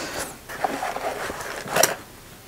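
Hand tools and small metal parts being handled on a wooden workbench: light scraping and rubbing, with a sharper knock near the end.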